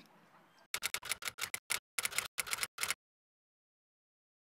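A quick, irregular run of sharp clicks or ticks, about fifteen in two seconds, starting under a second in and stopping abruptly, followed by dead silence.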